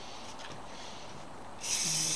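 Quiet at first, then about one and a half seconds in an aerosol spray paint can starts hissing as its nozzle is pressed.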